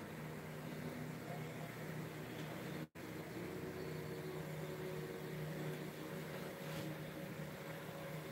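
A steady low hum over a faint even hiss, with a brief cut-out of all sound about three seconds in.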